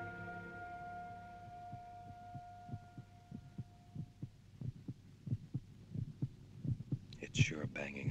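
Film soundtrack heartbeat: a fast, low thudding, about three beats a second, that grows louder as held orchestral notes fade out. It stands for a racing heart during a panic attack.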